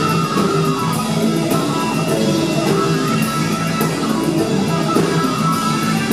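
Live rock band playing loud and steady, with an electric guitar played on a red Gibson SG-style guitar out front and regular sharp strikes from the band behind it.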